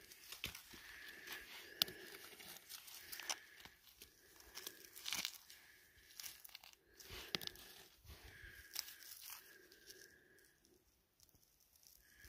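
Gloved hand scraping through loose gravel and rock, with small stones crunching and clicking together in irregular bursts.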